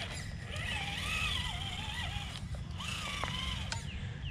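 Traxxas TRX-4 RC crawler on Traxx tracks climbing rocks: its electric motor and geartrain whine, the pitch rising and falling with the throttle, over a low rumble. A sharp click near the end.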